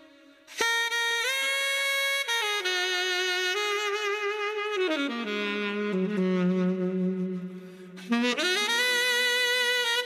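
Saxophone music: slow, long held notes with vibrato, starting about half a second in, stepping down to a low note around five seconds in and climbing back up near eight seconds.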